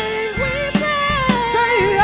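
Female gospel soloist singing long held notes with a wavering, sliding pitch over a live band, with drum hits about every half second.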